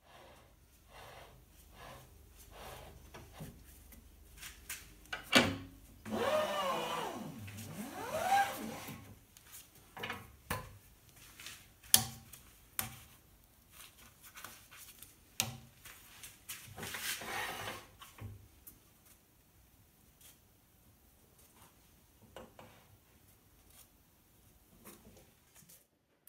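Knocks, clunks and clicks as a wooden bowl blank is fitted onto a Laguna Revo 18|36 lathe and the tailstock brought up against it, with the lathe motor off. A louder rubbing, squeaking scrape comes about six to nine seconds in, and another cluster of handling noise comes a little later.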